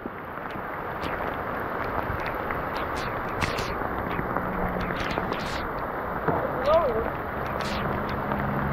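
Heavy rain pouring down onto a river surface: a steady hiss with scattered sharper ticks of large drops.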